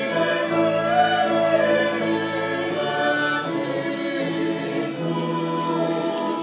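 Church choir of mixed voices singing a Romanian hymn in long held notes, with instrumental accompaniment.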